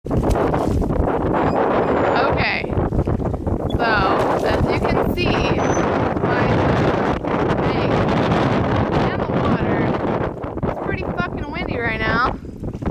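Strong gusty wind buffeting the microphone: a loud, constant rush that swamps almost everything else.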